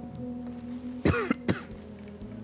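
A man coughs twice in quick succession, about a second in, the first cough longer than the second, over soft, steady background music.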